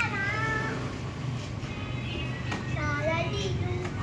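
A young child's high-pitched voice in two sing-song vocalizations: a short bright squeal at the start, then a longer phrase about halfway through that steps down in pitch.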